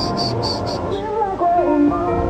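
A cricket chirping in a quick train of high pulses, about four a second, that stops a little under a second in, over steady background music.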